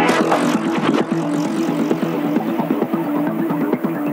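Electronic breakbeat dance music from a DJ mix: a repeating synth bass riff over a drum beat, with a rush of noise that fades away over the first second.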